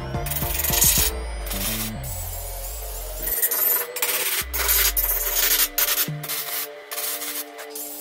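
Repeated short scraping and rasping noises of steel parts and clamps being handled and fitted on a metal welding table, over background music.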